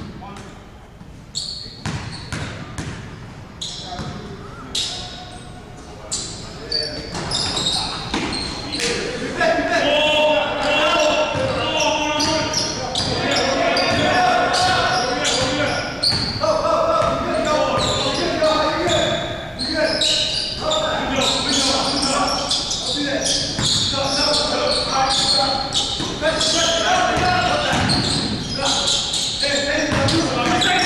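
A basketball bouncing on a gym's hardwood floor, echoing in the large hall. It starts with separate bounces about a second apart, then from about eight seconds in, live play with players' voices calling over the bouncing.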